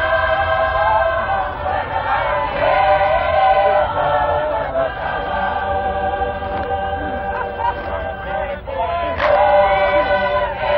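Tongan lakalaka singing: a large choir of voices singing together in parts, holding long chords that move from note to note.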